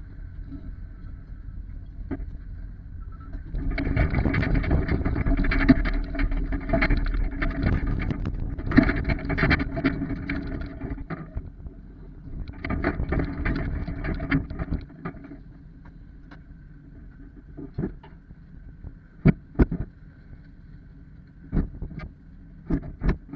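Truck engine running as the rig with its empty car trailer moves across rough ground, with loud rattling and banging over two stretches. It then settles to a quieter idle, with a few sharp knocks near the end.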